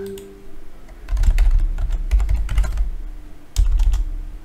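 Clicking and clattering of a computer keyboard and mouse on a desk, with heavy low thumps. There is a dense run from about a second in and a short burst near the end.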